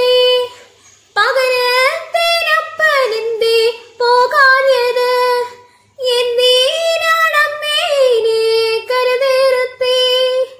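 A young woman singing a Malayalam folk song (naadan paattu) solo and unaccompanied, in long sustained phrases with a short pause for breath about half a second in and another just past halfway.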